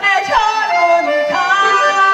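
A woman singing a chanson into a microphone, with accordion accompaniment. Her line slides down through a few notes, then rises into a long held note with vibrato about one and a half seconds in.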